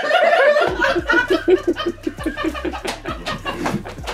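A woman laughing hard, a quick run of short laughs that goes on through the whole stretch.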